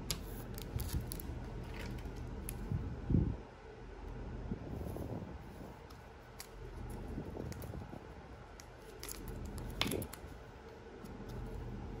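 Handling noise of a trading card being slipped into a thin plastic sleeve and then pushed into a rigid plastic top loader: soft rustles, small scrapes and light clicks, with a low knock about three seconds in and a sharper click near the end.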